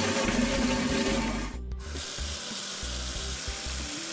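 A toilet flushing, cutting off about 1.7 seconds in, followed by a tap running steadily for handwashing.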